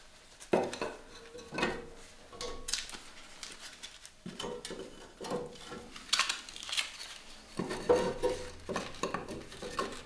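Split firewood sticks clattering and knocking as they are handled and laid into the firebox of a cast-iron wood stove: a series of irregular wooden knocks, some with a short ring.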